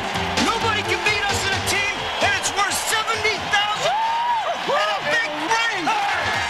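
A rap song's backing track, with a voice sliding up and down in pitch over it.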